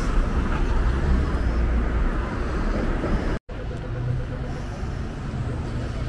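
Road traffic on a city street: cars passing with a steady low rumble and tyre noise. It cuts off abruptly a little over three seconds in and gives way to a quieter steady low hum.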